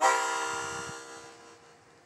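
Harmonica's closing chord: several notes sounded together and held, fading out over about a second and a half.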